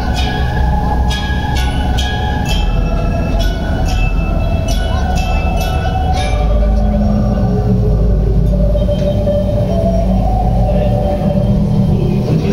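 Calico Mine Ride train rolling through the cave with a steady low rumble, its wheels clicking sharply in the first half, under the ride's sustained background music.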